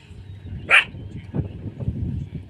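A short, sharp animal call, a single bark-like yip about three quarters of a second in, over a low rumble.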